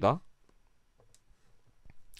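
A man's voice trailing off at the start, then a near-quiet pause with a few faint, separate clicks.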